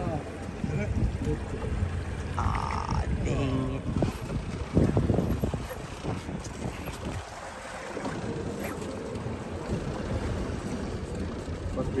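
Wind buffeting the microphone over the low, steady running of a fishing boat's outboard motor at trolling speed, with faint voices now and then.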